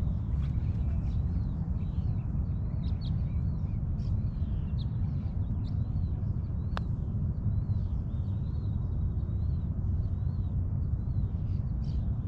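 Birds chirping over and over above a steady low rumble. A little past halfway there is a single sharp click as a putter face strikes a golf ball.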